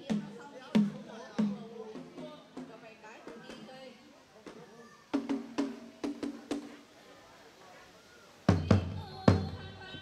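A small red hand drum beaten as a signal to start play in a tổ tôm điếm game. Evenly spaced single beats come first, then a quick run of beats in the middle, and the loudest beats come near the end.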